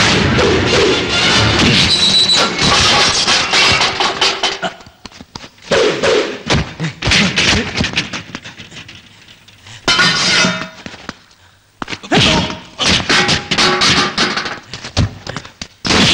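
Action-film fight soundtrack: background music with a rapid series of punch and thud sound effects, loud and dense at first, falling away about five seconds in, then returning in short bursts of blows around ten and twelve seconds in.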